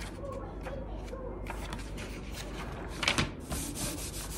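Pages of a thick paperback book being flipped and riffled by hand, a crisp paper rustle that grows louder about three seconds in.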